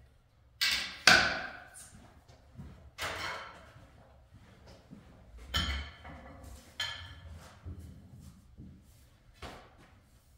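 Pool equipment being handled around the table: a series of sharp knocks and clacks, the loudest two about a second in, then several more spread out at intervals of a second or two.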